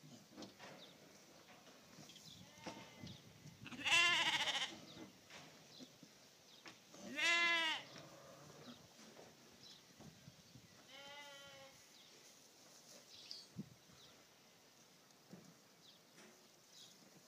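Three short bleat-like calls from a farm animal, the two loudest about four and seven seconds in and a fainter one near eleven seconds, over faint scuffing of dirt as the donkey rolls.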